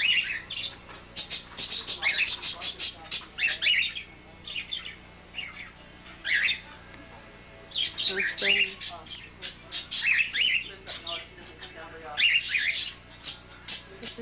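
Parakeets chirping and chattering in quick high-pitched bursts, with a lull of a few seconds in the middle.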